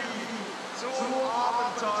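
A voice speaking German narration over a steady noisy background. The first half-second holds only the background hiss, then the voice starts.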